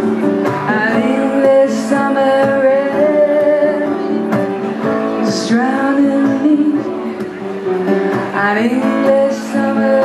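A woman singing live to her own acoustic guitar, the guitar played steadily under a sustained sung melody.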